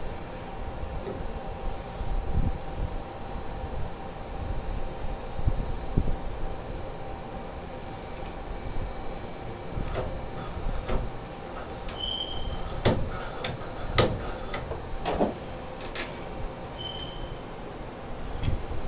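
Hands fitting a chrome single-lever shower handle onto its valve stem: a low handling rumble, then a string of small metallic clicks and taps in the second half, with two short high chirps.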